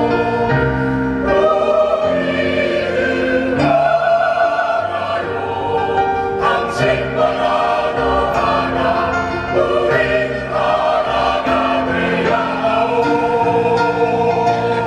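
Mixed choir of men and women singing in harmony, holding sustained chords that change every second or so.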